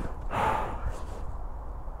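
A man breathing out heavily, one hard breath about half a second in, out of breath from riding; a low rumble runs underneath.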